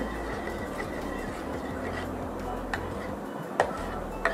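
Juice being stirred with a spoon in a stainless steel pot, with a couple of sharp metal clinks against the pot in the second half, over a steady low hum.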